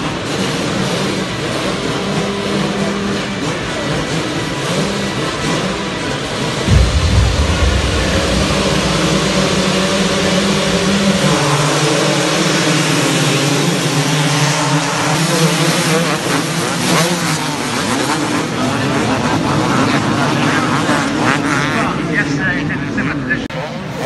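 A full gate of 250cc two-stroke motocross bikes revving together at the start line, many engines wavering up and down in pitch at once. A loud low rumble comes in about seven seconds in.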